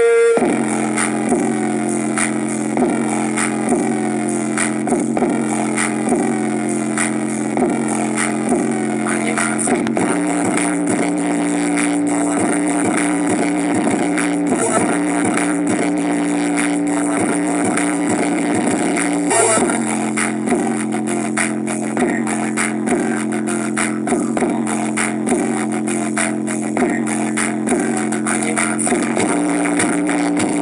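Music with deep sustained bass notes and a steady beat played at full volume through a knock-off JBL Boombox Bluetooth speaker for a bass test, with a brief break in the bass about nineteen seconds in.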